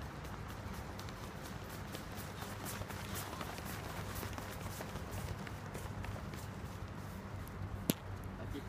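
Running footsteps of trainers on a concrete path, quick repeated strides passing close. A single sharp click sounds just before the end.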